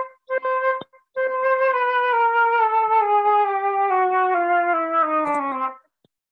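Flute playing two short notes at the same pitch, then a slow, smooth scale that steps down by small steps through about an octave.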